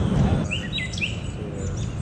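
Birds chirping: a few short, downward-sliding calls about half a second to a second in, over a steady low background rumble.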